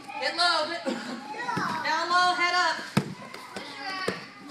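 Children's voices shouting and chattering in a large room, with one sharp thud about three seconds in.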